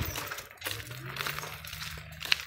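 Crackling and clicking handling noise from a handheld phone microphone while walking, with a faint low hum that starts about half a second in.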